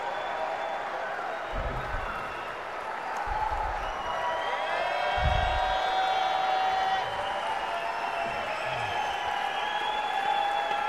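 Concert audience applauding and cheering, with shouts and whoops over the clapping, loudest about five to seven seconds in.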